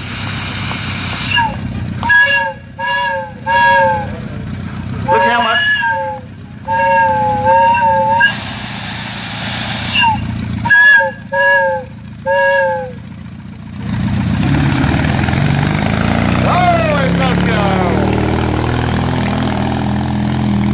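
Steam whistle on a steam-powered Jeep blowing a run of short toots, each sliding in pitch as it opens and closes, with the hiss of escaping steam between blasts. From about 14 seconds in, the whistle gives way to the vehicle's steady running rumble.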